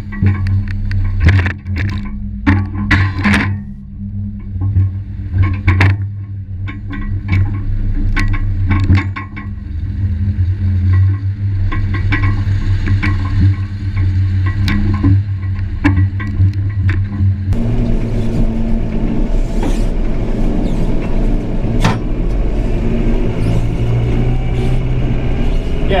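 Diesel engine of a farm loader vehicle running steadily while driving, with clattering knocks from the loader's front attachment over the first several seconds. About two-thirds of the way in the sound changes abruptly to the same engine heard from inside the cab.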